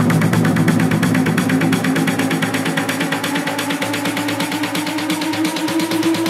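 Electronic trance music in a live DJ mix: fast, even synth pulses under a slowly rising pitch, with little deep bass, in the manner of a build-up.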